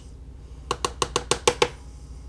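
A quick run of about seven light, hard taps, about seven a second, from handling a loose-powder makeup pigment jar to shake out pigment.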